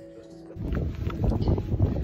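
A held musical chord breaks off about half a second in. Loud wind buffeting on a phone microphone follows, with irregular crunching footsteps on a leaf-littered dirt trail.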